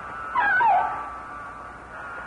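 A short high-pitched cry of distress about half a second in, falling in pitch, over a faint steady high tone.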